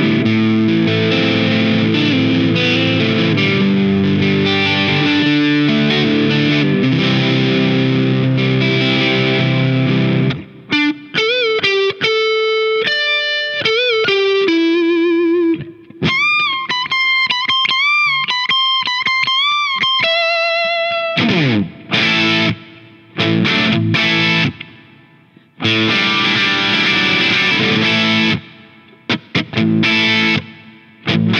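A 1962 Gibson ES-335 electric guitar played through a Keeley Noble Screamer overdrive into a 1977 Fender Princeton amp. On the neck pickup it plays overdriven chords and riffs, then single-note lead lines with string bends and vibrato, ending in a slide down the neck. About two-thirds of the way through it switches to the bridge pickup, playing choppy chords with short stops.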